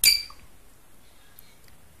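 A single sharp click at the very start as the S button on an MH1210B temperature controller is pressed and held to open its settings menu, followed by quiet room tone.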